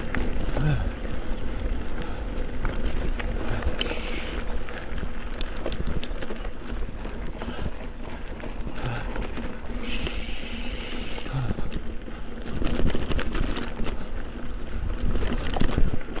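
Specialized Camber full-suspension mountain bike on 650b wheels ridden along a dirt singletrack: steady tyre noise on the dirt and wind on the microphone, with many small rattling clicks from the bike. A brief hiss about four seconds in, and a longer one from about ten seconds in.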